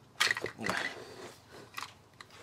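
Handling noise: a few short scrapes and clicks, the loudest about half a second in, as the plastic-bodied crimping tool and its pegged-on battery wires are handled and shifted on a wooden table.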